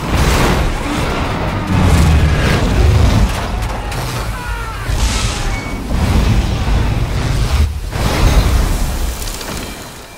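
Film sound effects of a plane crash-landing: repeated heavy booms and rumbling impacts as the plane strikes rock and ploughs through sand, mixed with music. The sound tails off near the end.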